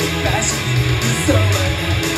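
Live rock band playing loud, with electric guitars prominent.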